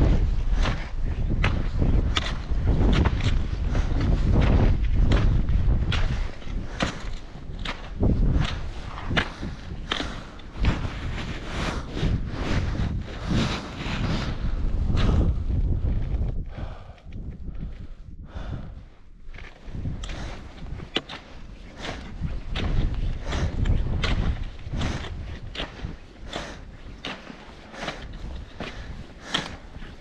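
Footsteps crunching on frosty volcanic scree and gravel, about two steps a second, from rigid plastic mountaineering boots. Wind buffets the microphone through the first half, then eases; the steps pause briefly a little past the middle.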